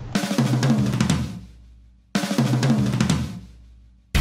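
Drum kit with snare, bass drum and cymbals, hit in two loud bursts about two seconds apart. Each burst rings out and fades almost to silence.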